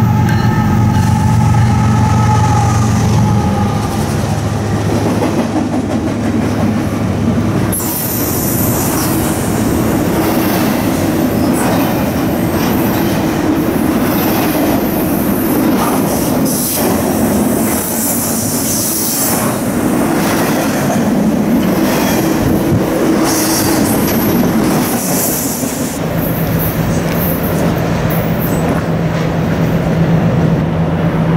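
Norfolk Southern freight train 25R passing, led by GE diesel locomotives: the locomotives' engines are loudest for the first several seconds, then the train's cars roll by with wheel squeal and clickety-clack. A new steady engine tone comes in near the end.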